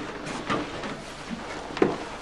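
Quiet room tone with a couple of faint short knocks, the clearer one near the end.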